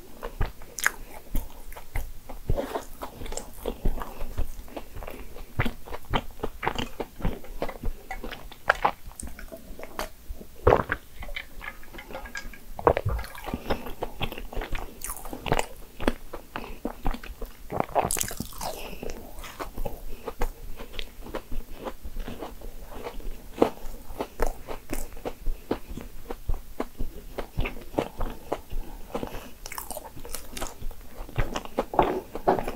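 Close-miked chewing of a lemon cake financier, with many small mouth clicks throughout and a few louder ones.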